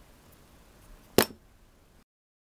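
Opened plastic LED lamp knocked down onto a concrete floor: one sharp clack a little over a second in, over faint background.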